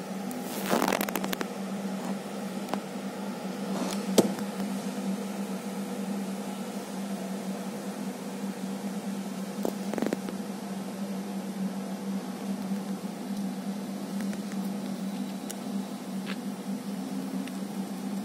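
Steady electrical hum of a running freezer, broken by a few short sharp clicks and crackles, the loudest about four seconds in.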